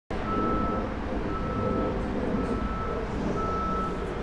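A vehicle's reversing alarm beeping at one steady pitch, about once a second, over a constant low rumble of engine and street noise.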